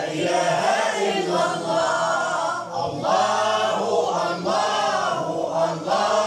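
A choir of boys singing Moroccan madih (devotional praise song) together without instruments, with a short break between phrases about three seconds in.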